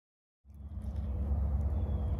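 Low, steady wind rumble on the microphone, cutting in suddenly about half a second in.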